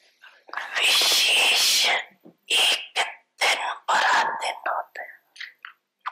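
A woman speaking into a microphone in short phrases with brief pauses, in a language other than English.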